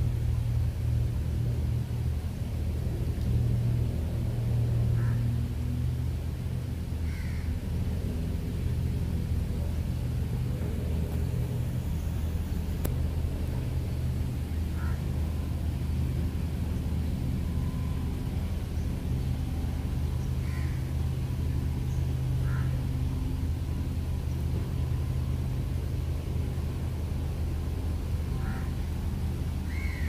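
A steady low rumble throughout, with a bird giving short single calls every few seconds.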